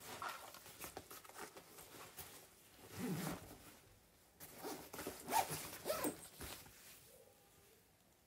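A zipper on a fabric backpack being pulled in several short runs, with rustling as the bag is handled.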